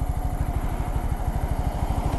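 Honda Grom's 125 cc single-cylinder engine running at low revs with an even, rapid putter.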